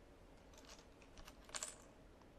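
Faint light clicks of small plastic counters being handled and picked up off a table, in two short clusters, about half a second in and again, a little louder, about a second and a half in.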